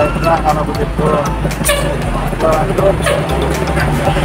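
A large tour coach's engine running with a steady low rumble as the coach pulls out and moves past close by, with people talking nearby.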